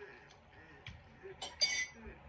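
A ceramic dinner plate gives one short, bright ringing clink near the end, with a few faint small clicks before it as food is picked from the plate by hand.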